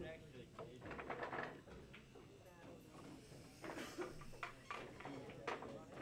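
Indistinct background chatter in a bar, with pool balls clicking together several times as they are gathered into a wooden triangle rack.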